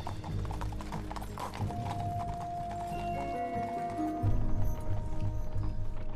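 A team of horses pulling a carriage, their hooves clip-clopping on a dirt road, with background music holding long notes.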